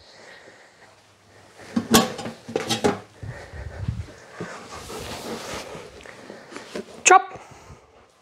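A few sharp knocks followed by soft rustling and shuffling, from a person walking across the room and sitting down on a sofa while a dog moves about; a woman says "drop" near the end.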